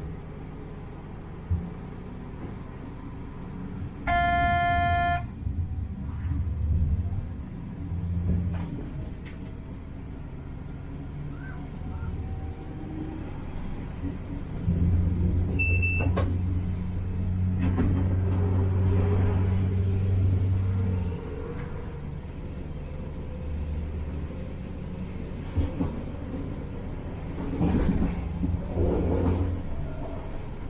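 Diesel railcar heard from inside the driver's cab as it runs along the line: a steady engine and running-gear drone that grows louder and stronger in the middle for about six seconds. About four seconds in comes a one-second horn-like tone, and around sixteen seconds a short high beep.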